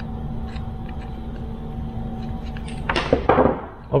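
Small wire cutters snipping the lead of a lithium-ion battery pack's BMS board, a short cluster of sharp snips and handling sounds about three seconds in, after a few light clicks over a steady low hum.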